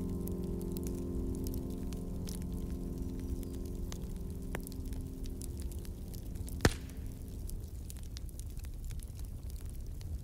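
The last held chord of an instrumental Christmas piece fades out over the first seven seconds or so, leaving a fire crackling with scattered small pops over a low rumble. One sharp, louder pop comes about two-thirds of the way through.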